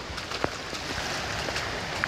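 Heavy rain and running floodwater on a street, a steady rushing hiss, with one sharp click about half a second in.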